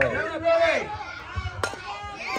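A softball bat hitting a pitched ball once, a single sharp crack about one and a half seconds in.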